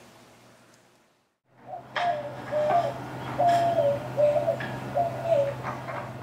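White-winged dove cooing: a run of hooting notes in several short phrases, stepping up and down in pitch, starting about two seconds in. A steady low hum and a few sharp clicks lie under it.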